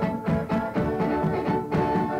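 Fiddle tune: a fiddle carries the melody over a guitar keeping a steady beat of about four strokes a second, in a 1960s home recording.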